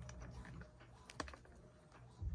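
Faint, light clicks and taps of a hand handling the recording phone or camera to zoom in, with one sharper click a little past halfway.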